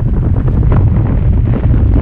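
Loud, steady wind rush buffeting the microphone of a harness-mounted action camera from the airflow of a paraglider in flight, mostly a low rumble.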